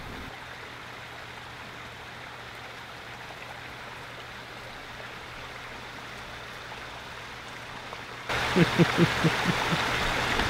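Backyard pond waterfall: a steady, even rush of running water. About eight seconds in the water sound gets louder and a person laughs over it.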